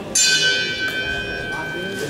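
Boxing ring bell struck once, signalling the start of a round: a sharp strike whose high overtones die away while one clear tone rings on.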